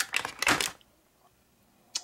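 Plastic Citadel paint pots clicking and rattling against each other and the plastic tray insert as one is handled and pulled out, a quick run of clicks in the first half second or so, then a single click near the end.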